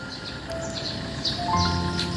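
Soft background music of long held notes, with deeper notes coming in about one and a half seconds in. Behind it runs a steady series of short, high chirps.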